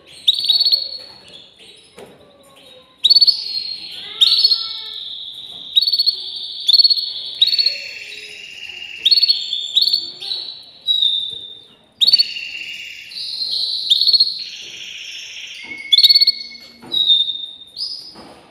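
Canary song: a continuous run of rapid trills and rolls, each phrase starting suddenly, held for about a second, then changing pitch to the next.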